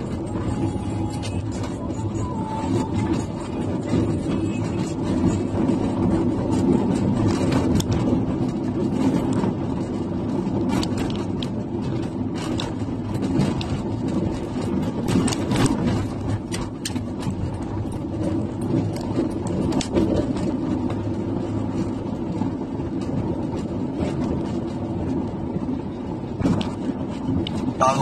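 Steady road and engine noise of a moving car heard from inside the cabin, a low rumble with scattered light clicks.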